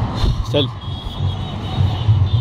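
Street traffic noise, a continuous low rumble from passing vehicles, with one short spoken word about half a second in.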